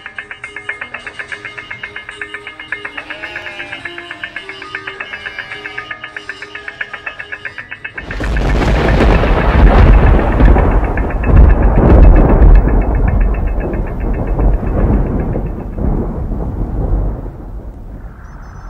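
Music with a fast pulsing tone over a slow melody, broken about eight seconds in by a sudden loud thunderclap that rolls on as a deep rumble and slowly fades.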